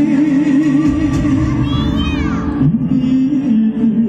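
A male singer performs a Taiwanese Hokkien ballad into a microphone through a PA, with instrumental accompaniment. He holds a long note with vibrato, and a new phrase begins about three seconds in. A high falling slide in the accompaniment comes near the middle.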